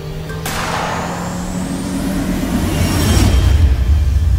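Dark trailer music and sound design. A sudden noisy swoosh comes about half a second in, with a high tone rising slowly above it over a held low note, and a deep low rumble swells near the end.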